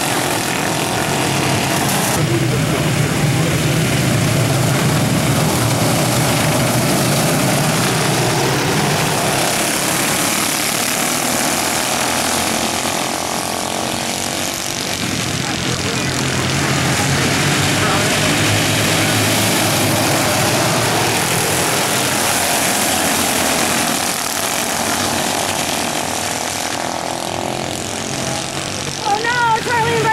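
Engines of several mini dwarf race cars running as they lap a dirt oval, the sound swelling and fading as the cars come by.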